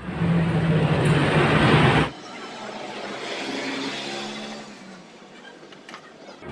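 Loud motor engine noise for about two seconds that cuts off abruptly, followed by fainter, steadier engine hum.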